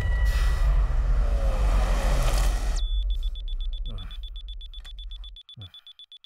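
A deep rumbling boom on the soundtrack dies away over about three seconds. Then a digital wristwatch beeps in a rapid, high-pitched pulse.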